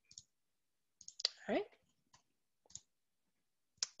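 A handful of scattered sharp clicks at a computer while an answer is entered and submitted, spaced irregularly across a few seconds with near silence between them.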